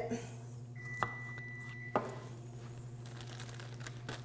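Small knife tapping on a plastic cutting board as fresh cranberries are cut in half: two sharp taps about a second apart, with faint crinkling of a plastic produce bag. A thin, steady high tone sounds for about a second between the taps, over a steady low hum.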